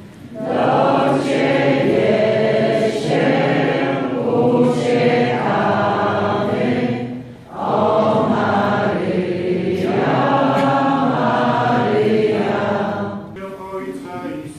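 A group of voices singing a hymn together in long sustained phrases, with a brief pause about halfway through and quieter in the last second: the entrance hymn at the start of Mass.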